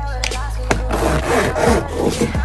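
Zipper being drawn around a clear cosmetic pouch to close it: a rasping run of rapid small clicks through the second half, over background music.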